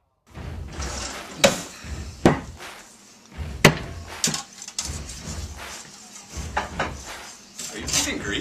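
Several sharp knocks or bangs, the loudest about a second and a half in and again about three and a half seconds in, over a low rumbling background that comes and goes.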